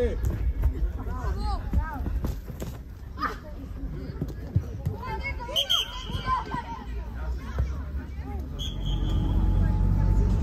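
Voices of players and onlookers calling out across an outdoor football pitch, over a steady low rumble. Two short high tones sound, one about halfway through and one near the end.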